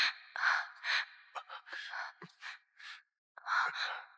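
Breathy sighs and gasps from a couple embracing, in short breaths about every half second, with a brief pause near three seconds.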